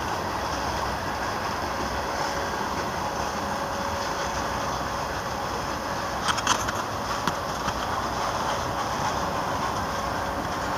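Freight train of tank cars and boxcars rolling past, a steady rumble of steel wheels on the rails. A brief cluster of sharp clicks comes about six and a half seconds in, with a few fainter ones after.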